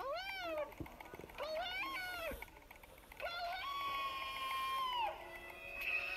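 A cat meowing: two short meows that rise and fall, then one long, level, drawn-out meow. A steady high tone starts near the end.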